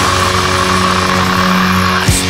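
Black metal music: a distorted guitar chord held steady, with no drum hits, after a gliding scream-like sound that ends just before it.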